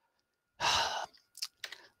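A man's audible breath about half a second in, sounding like a sigh, followed by a few faint mouth clicks.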